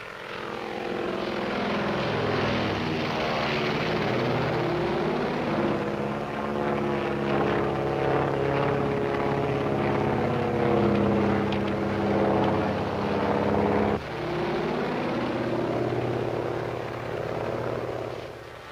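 Propeller airplane's piston engine droning steadily in flight, its pitch slowly shifting. The drone breaks off and starts again abruptly about 14 seconds in.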